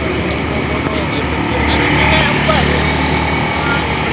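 Steady low rumble of running vehicle engines, swelling slightly in the middle, with faint voices of people nearby.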